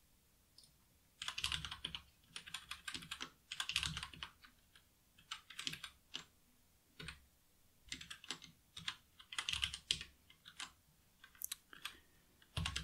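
Typing on a computer keyboard: irregular flurries of quick keystrokes with short pauses between them, starting about a second in.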